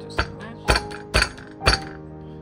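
Kitchen knife chopping on a wooden cutting board: four sharp strokes about half a second apart, over background music.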